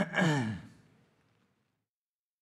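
A man clears his throat: one short voiced sound, falling in pitch, lasting about half a second at the start.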